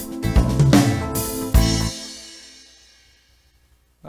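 Ketron Event arranger keyboard playing one of its factory accompaniment styles, drum kit with bass and chords, as a drum fill is triggered; a last loud hit comes about a second and a half in and the music rings away to nothing.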